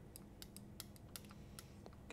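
Faint, irregular light clicks of a glass stirring rod tapping the inside of a small glass beaker of melted gelatin base, about eight in two seconds.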